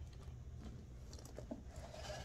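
Faint handling of a leather handbag and its contents as an item is pulled out, with a few soft clicks over a low steady hum.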